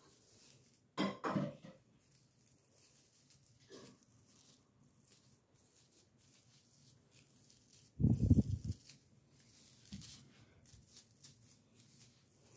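Plastic branches of an artificial Christmas tree rustling faintly as they are handled, with one dull thump about two-thirds of the way through.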